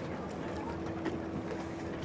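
Outdoor background ambience: faint voices of people and a steady low hum, with no distinct foreground event.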